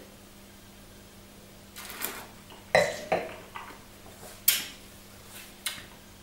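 A wine taster sniffing and sipping red wine from a glass: a handful of short, breathy sniffs and slurps with small mouth clicks, separated by quiet gaps, the loudest one about two-thirds of the way through.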